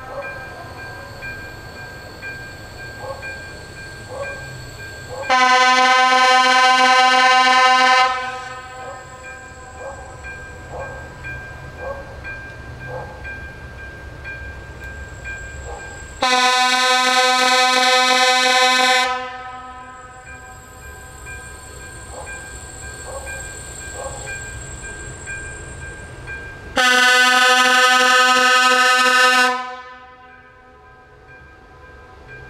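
Electric locomotive's horn sounding three long steady blasts, each about three seconds and roughly ten seconds apart, as the train approaches the station. A faint steady rail hum is heard between the blasts.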